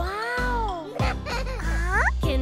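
A high, wordless cartoon-character voice over a children's song backing: one long call that rises and falls, then a quick upward swoop near the end.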